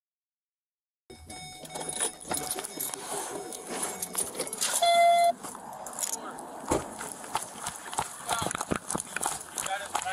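Bodycam microphone picking up an officer moving fast on foot: footfalls and the jostle of gear and clothing, with a man's voice. About five seconds in, a short steady tone sounds for half a second, the loudest thing heard.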